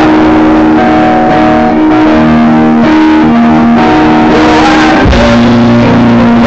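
A live rock band playing loud, with held guitar chords that change every second or so.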